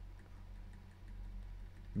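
Faint room tone between phrases of speech: a low steady hum with a few faint light ticks.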